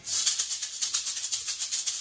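A pair of maracas shaken by hand in a quick, even rhythm, giving a steady run of short rattling strokes.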